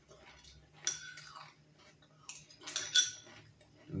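A spoon clinking against a small china bowl: one light clink about a second in, then a few more close together around the three-second mark.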